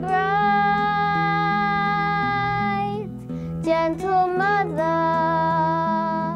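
A child's voice singing a slow song over sustained instrumental accompaniment. The voice holds one long note for about three seconds, then moves through a few short notes into another long held note.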